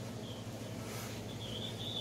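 Faint, short, high insect chirps recurring over a low steady hum.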